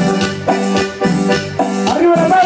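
A live band playing: held keyboard chords over a steady beat of about two strokes a second, with high, short percussion hits in between.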